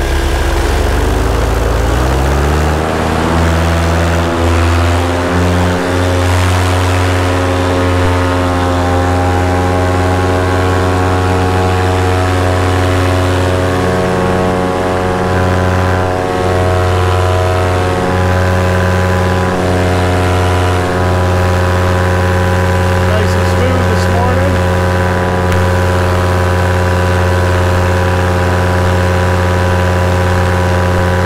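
Paramotor's two-stroke engine and propeller going to full throttle for takeoff: the pitch rises over the first couple of seconds, then the engine runs steadily at high power.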